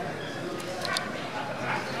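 Shouting and chatter from spectators and corner coaches in a hall during a grappling match, short yelled calls rising over a noisy crowd murmur, with a couple of short sharp smacks about a second in.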